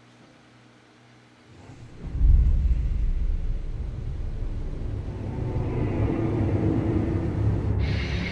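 Deep, loud rumble from a film trailer's soundtrack that swells in about two seconds in and holds, under a low hum at the start.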